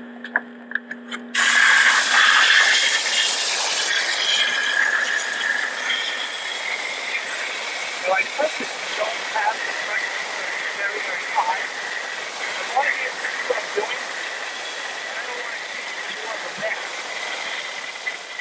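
Steam cleaner's single-hole nozzle blasting a jet of steam: a loud, steady hiss that starts suddenly about a second and a half in and eases off slightly as it goes on.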